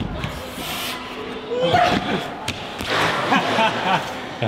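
A climber comes off an indoor bouldering wall and lands on a thick crash mat with a thud, among shouts and voices.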